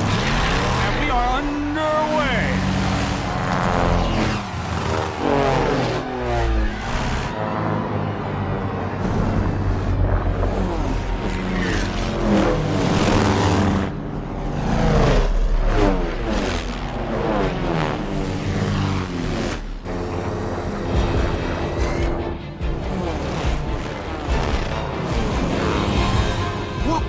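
Film soundtrack mix of a pack of propeller-plane engines revving up and racing past at the start of an air race, their pitches repeatedly rising and falling, over a music score and voices.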